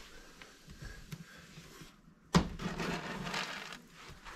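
One sharp knock a little past halfway, then about a second and a half of rustling and scraping: household handling noise as dry cat food is got out to feed the cats.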